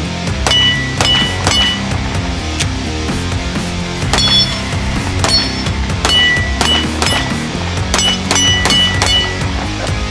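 Background music with about a dozen shots from a custom Staccato pistol, fired in quick strings of two to four. Several shots are followed by the brief ring of a steel target being hit.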